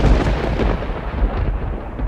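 A loud, continuous rumbling noise, heaviest in the low end, without a clear pitch, easing slightly near the end.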